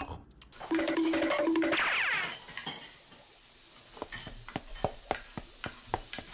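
A short musical sting of two held notes with a falling sweep over it, then kitchen clatter: a run of quick clinks and knocks of dishes, pots and utensils.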